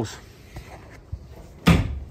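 A single loud clunk from the rear barn door of a Peugeot Boxer panel van as it is opened, heard near the end after a quiet stretch.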